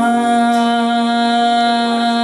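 A woman singing a Rajasthani Maand, sliding up into one long, steady held note.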